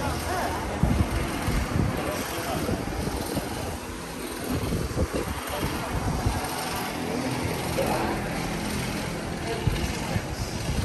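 Chatter of a crowd of tourists moving through a hall, no single voice standing out, with irregular low rumbling on the microphone.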